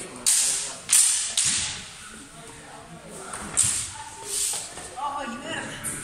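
Steel longswords clashing in free sparring: three sharp blade strikes in the first second and a half, then two more around the middle, each with a short ring.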